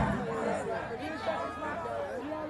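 Crowd chatter: many voices talking and calling out over one another, with no music playing.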